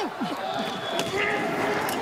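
Field-level sound of an American football snap: short shouted calls from players over a steady stadium crowd noise, with a sharp knock about a second in and another near the end as the linemen engage.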